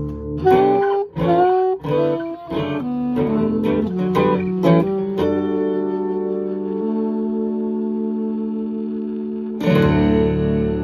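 An acoustic guitar strumming and a saxophone playing together, a run of short notes with sliding pitches. About five seconds in they settle on one long held chord that rings for about four seconds, then a fresh strummed chord comes in near the end.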